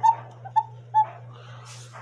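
A pop-up cuckoo clock's paper bellows pipe giving three short toots of the same pitch about half a second apart, as the bellows are worked by hand. These are modern-style bellows, which the owner holds sound less defined than the triangular bellows of antique clocks.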